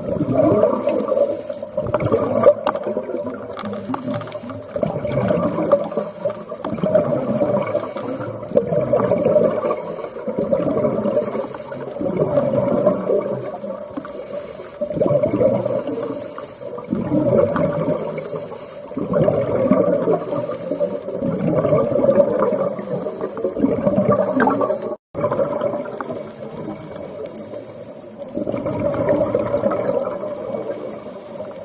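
Scuba diver's breathing heard underwater: bubbles rumbling and gurgling from a regulator exhaust, rising and falling in repeated surges every few seconds. The sound cuts out for a moment near the end.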